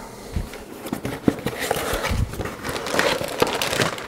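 Packaging being handled: the crinkle of a hard drive's anti-static bag and the scrape of cardboard as the drive is pulled from its box, with small clicks and one sharper tick about a second in.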